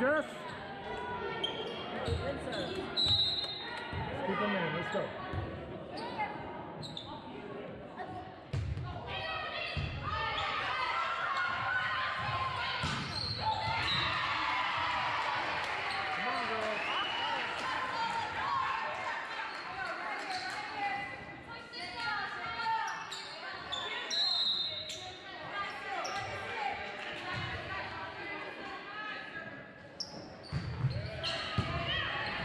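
Indoor volleyball match in a reverberant gymnasium: sharp slaps of the ball being hit and players calling out, over the chatter and shouts of spectators and benches. The voices grow louder and denser from about ten seconds in for several seconds, then ease off again as play resumes.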